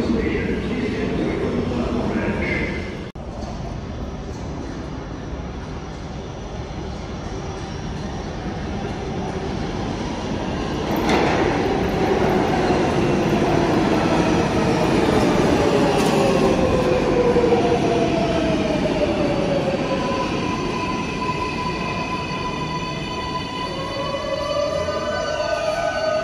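MTA R188 subway train on the 7 line pulling into an underground station: the rumble and wheel noise build from about a third of the way in, then the motor whine falls steadily in pitch as it brakes to a stop. Steady tones hold near the end as it stands at the platform.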